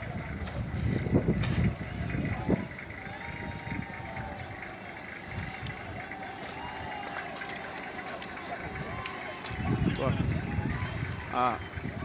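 Voices of several people talking and calling out in the street, with bouts of low rumbling near the start and about ten seconds in.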